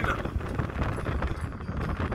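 Road vehicle driving, heard from inside the cabin: a steady low road rumble with irregular rattles and knocks.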